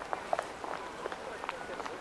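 Outdoor city ambience while walking: footsteps and short ticks from the walker, with indistinct voices of people talking in the background.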